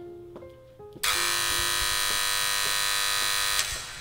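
Soft piano notes, then about a second in a loud, harsh electric alarm buzzer starts abruptly, holds steady for about two and a half seconds and cuts off, while the music's notes carry on faintly beneath it.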